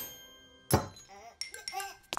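Cartoon sound effects: one sharp clink about a third of the way in, then short wordless character vocal sounds that bend up and down in pitch.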